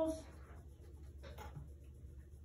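Faint scratching of pencils on paper as students write notes, with a couple of short taps about a second and a half in, over a low steady room hum.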